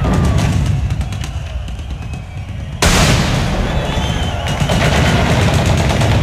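Staged battle sound effects played loud over an arena PA: rapid machine-gun fire over a heavy booming rumble, with a sudden loud blast about three seconds in.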